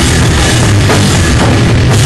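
Hardcore band playing live: drum kit hitting steadily under dense, loud amplified guitars and bass, with no break.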